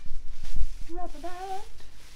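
Low thumps and knocks from handling a plastic-wrapped electric guitar as it is lifted out of its cardboard box, then about a second in a short hummed note that wavers and rises in pitch.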